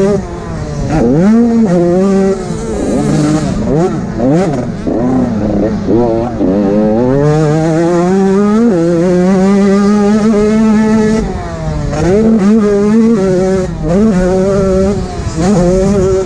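85cc two-stroke motocross bike engine, heard up close from the rider's helmet, revving up and down over and over as the throttle is opened and shut through the gears. The pitch climbs, drops and climbs again, and holds high and steady for a couple of seconds near the middle.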